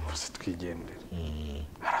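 A man's low, quiet voice speaking or murmuring in short stretches.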